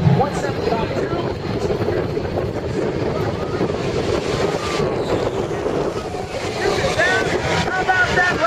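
The Shockwave jet truck's afterburning jet engines at full thrust on its run down the runway, heard as a steady, dense rush of jet noise. Crowd voices are heard over it.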